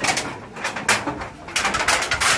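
A corrugated roofing sheet scraping and knocking against bamboo rafters as it is slid into place, in several irregular bursts. The longest scrape comes near the end.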